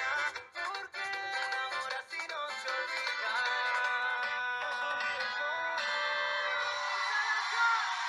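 A Latin pop song with sung vocals plays, mixing bachata and cuarteto styles. It sounds thin, with almost no bass.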